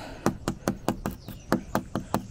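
Fingernails tapping and picking at a crust of ice on a car windshield: a quick run of sharp clicks, about six a second. The ice is frozen hard.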